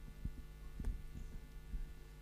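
Steady electrical hum from the sound system, with irregular soft low thumps and a single click, typical of a microphone being handled.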